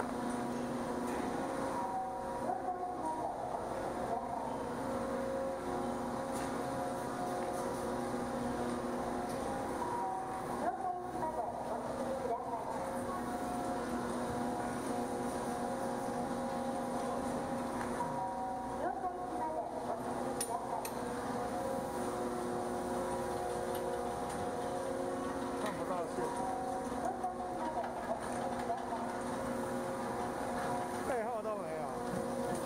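Chairlift station machinery running: a steady mechanical hum with several held tones as the chairs come round through the station.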